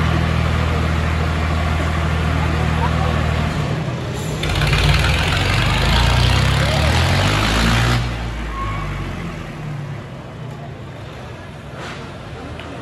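Diesel tractor engines of a Swaraj 855 and a Mahindra Arjun 555 pulling against each other: a steady engine note for the first few seconds, then from about four seconds the engines rev hard under load, loudest until about eight seconds, before easing off. Crowd voices run underneath.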